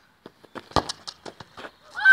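A football kicked hard close by, one loud thud about three quarters of a second in, among a run of quick footsteps on a hard court surface.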